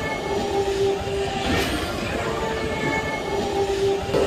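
Flight-simulator ride soundtrack: held, horn-like notes that come back in a slow repeating pattern over a steady low rushing rumble.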